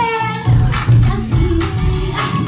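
Live music: a woman singing a high, wavering note into a microphone over a backing track with a bass beat about twice a second.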